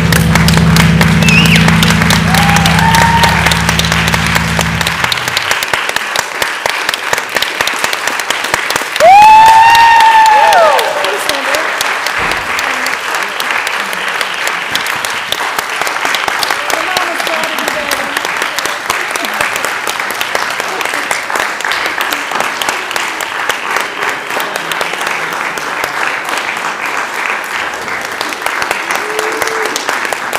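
Audience applauding and cheering after the final sustained low note of two electric bass guitars, which rings for about the first five seconds and then cuts off. About nine seconds in, a loud whistle rises and falls over the applause for about two seconds.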